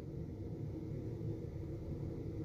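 Low, steady background hum with no distinct sound events.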